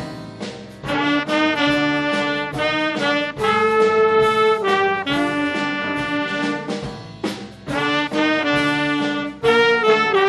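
Jazz big band playing live: trumpets, trombones and saxophones sound full chords in short accented phrases, with brief breaks between them.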